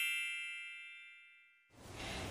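The tail of a bright, high chime sound effect ringing out and fading away, dying out about a second and a half in.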